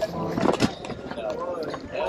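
Indistinct voices of people talking at a distance from the microphone, with a couple of short knocks about half a second in.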